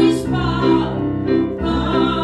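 Church worship song: a group of voices singing over instrumental accompaniment with a steady bass line.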